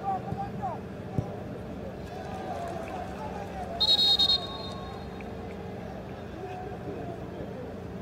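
Voices and shouts from players and the crowd at a football match, with one short shrill referee's whistle blast about four seconds in, the loudest sound, with a trilling flutter. A single sharp knock sounds about a second in.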